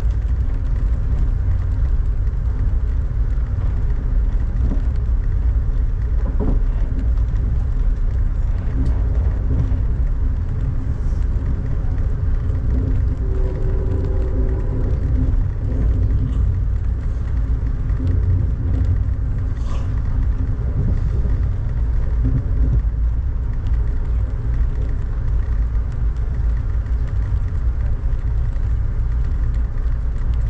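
Inside a moving Amtrak passenger train car: a steady deep rumble of the train running along the track at speed.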